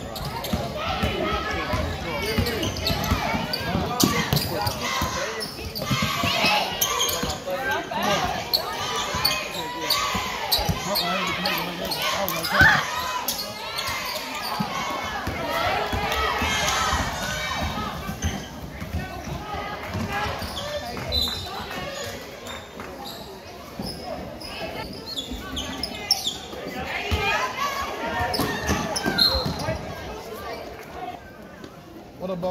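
A basketball being dribbled and bouncing on a hardwood gym floor, with repeated sharp thumps throughout. Voices of players and spectators call out and chatter, all echoing in a large gym.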